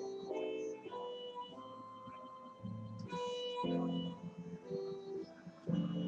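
Instrumental music: a melody of separate pitched notes, changing about every half second, with some held longer in the middle.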